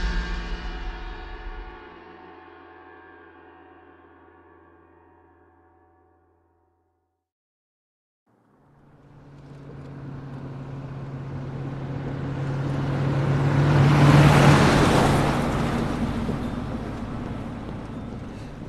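A deep gong-like hit rings out and fades away over about six seconds, followed by a couple of seconds of silence. Then a van's engine and its tyres on loose gravel rise out of the quiet, are loudest as it passes about two-thirds of the way in, and fade as it drives off.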